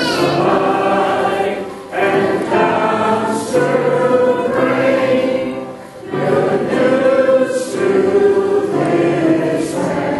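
A choir singing a sacred song in long sustained phrases, with short breaks between phrases about two and six seconds in.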